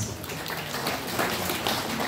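Many cadets' rifles slapped and handled at once as a large formation executes the manual-of-arms command "port arms": a dense, uneven clatter of many small clicks and slaps.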